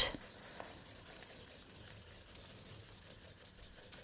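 Felt-tip marker colouring in on paper, a faint steady scratchy rubbing of the tip going back and forth over the sheet.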